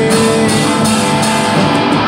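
Rock song cover with electric guitar and drums playing steadily, an instrumental stretch without singing.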